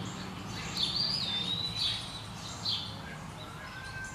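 Wild birds chirping: a short high call repeated about once a second, with a longer whistled note that falls in pitch about a second in.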